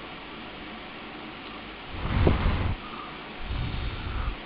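Two gusts of breath blown at a handheld vane anemometer, heard as rumbling wind noise on the microphone: a louder one about two seconds in and a weaker one near the end, over a steady low hiss.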